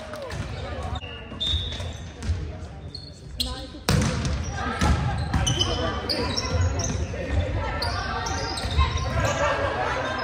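Volleyball play in a gym hall: the ball being hit, sneakers squeaking on the hardwood court and players calling out, all echoing in the hall. It gets suddenly louder a little before halfway through, as a new rally starts.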